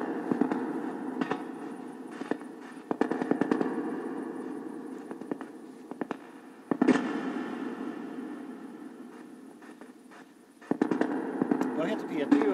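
Ghost-box radio scanning through stations: a hiss of static through a small speaker, chopped by rapid clicks as it jumps from frequency to frequency. It surges loud and fades back four times, about three to four seconds apart.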